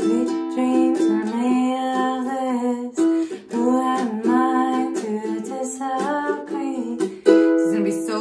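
Ohana spruce-top pineapple tenor ukulele strummed, its chords ringing and re-struck several times, with a short laugh about four seconds in.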